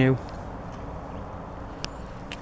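A man's voice ends a word, then steady background noise with no distinct source and a faint tick near the end.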